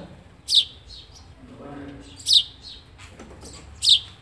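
Sparrow chick chirping from the nest. Three sharp chirps, each falling in pitch, come about a second and a half apart.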